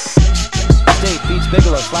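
Hip hop track with rapped vocals over a heavy bass beat; the beat kicks back in right at the start after a brief break.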